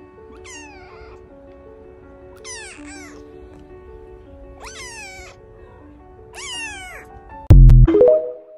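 A kitten meowing four times, about two seconds apart, each meow high and falling in pitch, over soft background music. Near the end comes a loud, deep boom, the TikTok end-screen sound effect.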